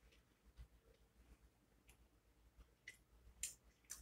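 Near silence with a few faint, short clicks in the second half, from a person chewing food.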